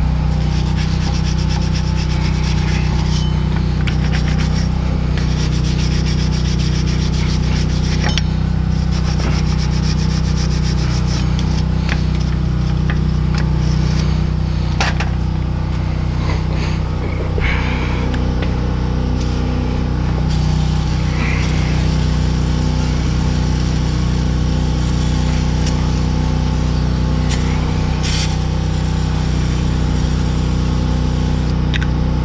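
Hand wire brush scrubbing rust and brake dust off a truck's bare front wheel hub and steering knuckle: a continuous scratchy rubbing, over a steady low machine hum.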